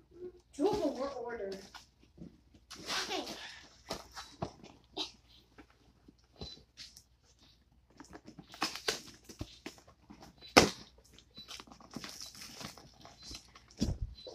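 Packing tape and cardboard on a shipping box being picked at and peeled by fingers: scattered scrapes and short rips, with a sharp click about ten and a half seconds in. A short vocal sound with a bending pitch comes near the start.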